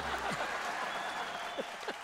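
Studio audience applauding after a punchline, a steady clatter of clapping that eases off slightly in the second half.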